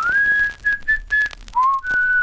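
A person whistling a short tune: a quick upward slide into a high note, a few short notes, a lower note that slides up, then a long held note near the end.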